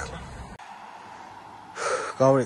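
Low rumble inside a pickup truck's cab on the move, cut off suddenly about half a second in. Quieter open-air background follows, then a sharp intake of breath just before the end.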